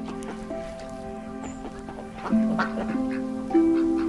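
Duck quacking, a few quacks in the second half, over background music with held notes.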